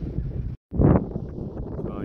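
Wind buffeting the microphone in a steady low rumble. About half a second in the sound cuts out completely for a moment, then comes back with a loud gust.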